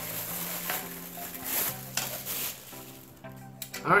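Plastic bag crinkling and rustling as a titanium cook pot set is unwrapped, dying away about three seconds in. Background music with held notes runs underneath.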